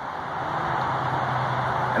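A motor vehicle running: a steady low engine hum under a noisy rush that builds slightly over the first second and then holds.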